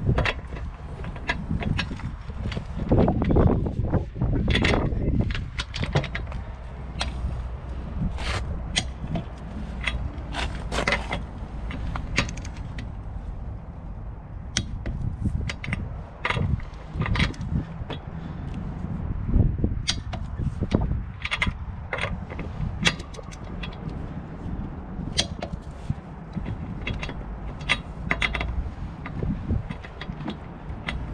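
A long click-type torque wrench on car lug nuts: a string of sharp, irregular metallic clicks and ratcheting as it is set on each nut and pulled, checking the torque that the impact wrench put on them. A steady low rumble runs underneath.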